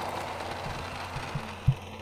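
Small electric motor inside a switch-operated gadget geocache, running with a low steady hum as it slowly lowers the hidden container. A single short knock near the end.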